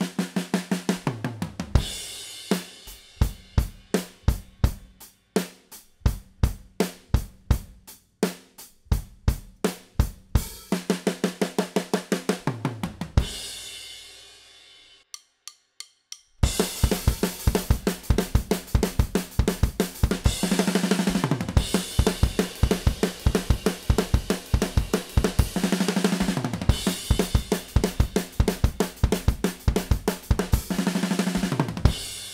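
Acoustic drum kit playing a fast punk/hardcore beat on kick, snare, hi-hat and cymbals, broken by tom fills that drop in pitch. About halfway through, the playing stops and the cymbals ring out, with a few light stick clicks. It then starts again, denser and louder, with two more fills.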